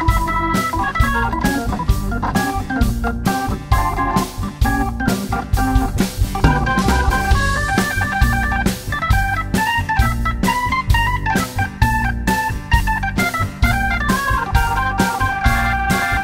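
Hammond B3 organ playing a solo in an instrumental break of a blues song, over drums and upright bass, holding a long note near the end.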